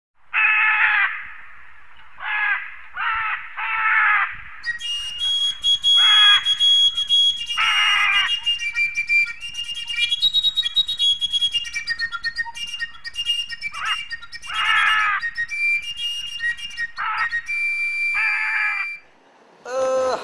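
Harsh, squawking bird calls repeated every second or two, joined after about five seconds by a dense layer of high whistled notes and a fine high crackle, like a tropical forest chorus. The sounds fade out just before the end.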